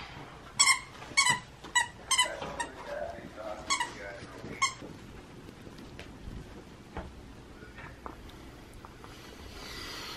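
Small dog giving short, high-pitched whimpering squeaks, about six in the first five seconds, then quieter room sound.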